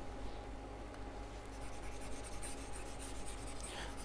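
Faint scratching of a stylus rubbing on a pen tablet as a drawing is erased, over a thin steady hum.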